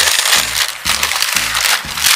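Thin plastic carrier bag crinkling and rustling as hands pull it open, over background music with a steady beat.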